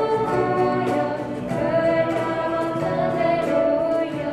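A church worship song: women's voices singing a hymn into microphones, accompanied by strummed acoustic guitar and electric bass guitar.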